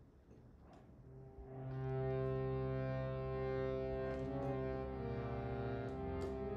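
Harmonium starting about a second and a half in and sounding a steady, sustained drone chord, with a few faint clicks.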